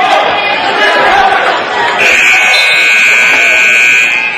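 Electronic gym scoreboard buzzer sounding one long steady tone that starts about halfway through, over spectators' chatter.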